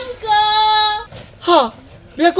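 A high female voice singing one long held note, then a short falling note about one and a half seconds in.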